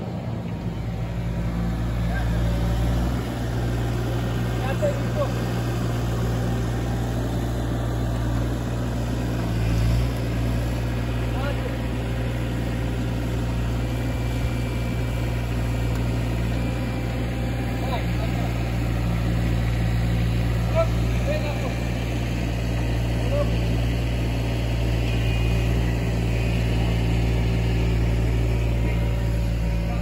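A loud, steady low hum that holds one pitch throughout, with a few faint short chirps over it.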